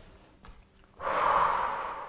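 A woman breathing out heavily: one long, deep exhale starting about a second in, as she catches her breath after exertion.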